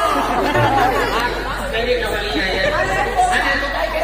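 Speech: several people talking loudly over a stage microphone, with a steady low hum underneath.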